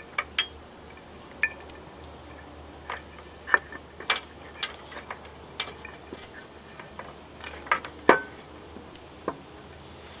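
Scattered small clicks and light knocks as an air conditioner's fan motor is handled and taken apart, its wiring and casing parts tapping and clicking about a dozen times at uneven intervals.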